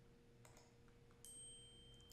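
Near silence: room tone with a faint computer mouse click or two and a faint high steady whine that starts about halfway through.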